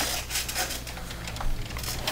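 Faint clicks and handling rustle of over-ear headphones being put on, over a low steady hum.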